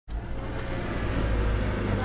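A Subaru's boxer engine idling steadily, heard from inside the car's cabin.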